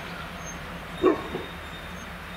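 Diesel multiple unit being towed slowly past, a steady low rumble and hum. About a second in there is a short, sharp, loud sound, with a fainter one just after.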